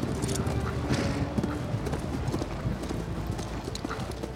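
Several horses walking with hooves clip-clopping over a murmur of a large crowd of men.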